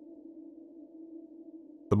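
Steady, low ambient drone from the music bed, a few held tones with no beat or melody, with a man's narrating voice coming in at the very end.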